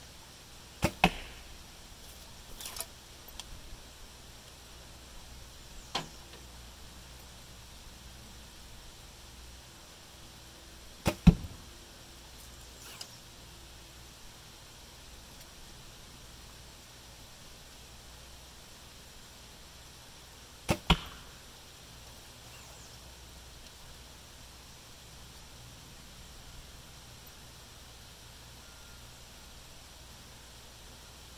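A traditional bow shot three times, about ten seconds apart: each shot is a sharp snap of the string on release followed a fraction of a second later by the arrow striking the target. Fainter clicks come between the first two shots as the next arrow is handled and nocked.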